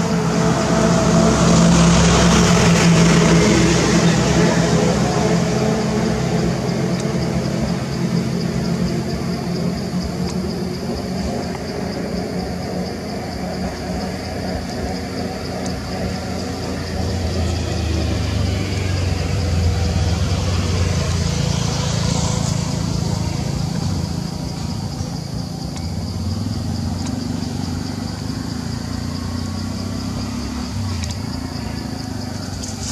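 Road traffic: a steady engine hum, with a louder vehicle passing about two seconds in and another around twenty-two seconds, under a steady high-pitched drone.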